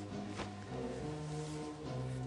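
Score music of held, low brass-like chords, moving to a new chord about two-thirds of the way through.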